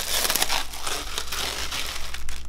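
Thin plastic sheet crinkling as it is peeled back off a clear plastic egg box, with the crackling busiest in the first second.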